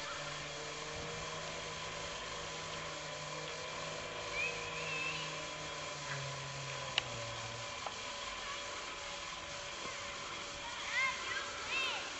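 Outdoor background of a steady low motor-like hum that drops in pitch about six seconds in, with a few faint chirps.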